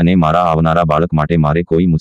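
Speech only: a synthesised text-to-speech voice narrating a story in Gujarati.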